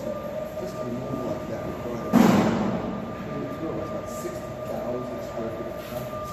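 A loud bang about two seconds in, ringing out and fading over about a second in a large, echoing concrete space. Under it runs a steady hum at two fixed pitches, with faint murmuring voices.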